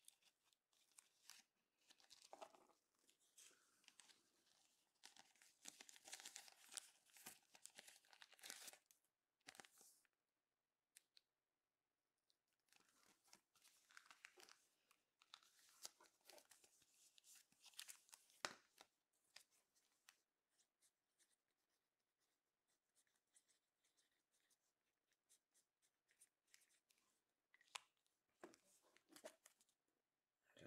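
Faint, irregular rustling and crinkling of trading cards being handled in plastic sleeves and top-loaders, coming in short bursts with quieter pauses.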